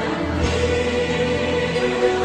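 Choral music, voices singing held notes.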